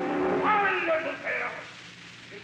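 An operatic voice singing a phrase with sliding pitch over the orchestra, heard through the narrow, hissy sound of a 1936 live radio-broadcast recording. The voice and orchestra drop away noticeably toward the end.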